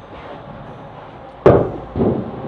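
The wooden lid of an old hive-box-style honey extractor set down with one sharp knock about one and a half seconds in, followed by a short ring-out.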